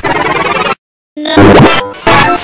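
Heavily distorted, effects-processed cartoon audio: a choppy buzzing stretch that cuts off, a short silence, then a loud booming burst about a second and a quarter in.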